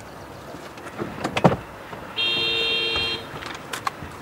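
A car horn sounds once, one steady two-tone honk of about a second, a little over two seconds in. It comes after a few short clicks.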